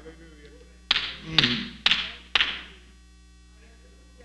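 Four sharp strikes, evenly spaced about half a second apart, each trailing off with a ringing decay.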